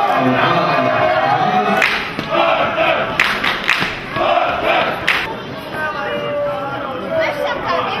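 A small group of football supporters cheering and chanting to celebrate a goal, with a few sharp hand claps in the middle.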